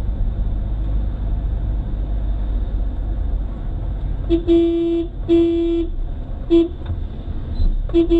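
A car horn honks in the second half: two toots of about half a second and a short one, with another starting right at the end. Underneath is the steady low rumble of a car driving, heard from inside the cabin.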